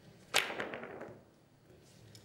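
Carom billiard shot: the cue tip strikes the cue ball with a sharp crack about a third of a second in. A quick run of fainter ball clicks follows and dies away within about a second.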